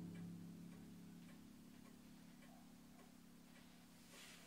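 The last chord of a 1931 B. Sommerfeld upright piano dying away, its low notes ringing on and slowly fading. A faint, even ticking, about two a second, runs underneath.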